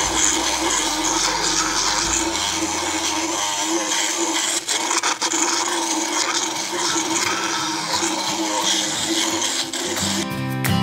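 Motorised equine dental float grinding sharp hooks off a horse's molars: a steady mechanical grinding of burr on tooth, with a few brief breaks about halfway through.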